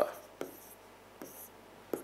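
Stylus writing on the glass of an interactive touch-screen display: a few faint, short, high-pitched scratchy strokes and light taps.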